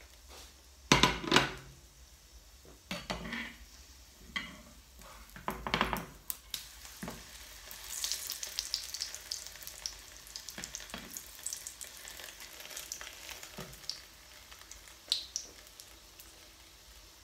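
Knocks and scrapes of a spatula against a frying pan in the first few seconds, the loudest about a second in. Then a pancake frying in hot oil, sizzling with a fine, spitting crackle.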